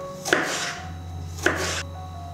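Chef's knife slicing a tomato on a wooden cutting board: two cuts about a second apart, each a sharp knock of the blade on the board followed by a short swish.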